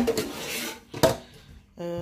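Two clanks of cookware, a pot and a utensil or lid knocking, about a second apart, the first the louder and followed by a short rattle.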